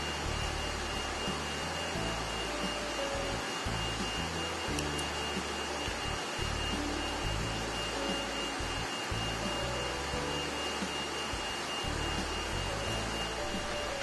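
Steady rushing hum of a cutting plotter's vacuum table running in the background, with a thin high whine held throughout.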